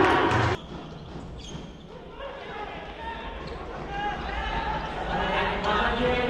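Futsal game sounds in an echoing sports hall: the ball being kicked and bouncing on the wooden court, with voices calling out. The sound is loud for the first half-second, drops suddenly, then builds back up as the voices return.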